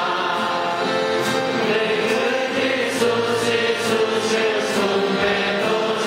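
A congregation of men and women singing a hymn together from hymnbooks, many voices holding long notes in a steady, even rhythm.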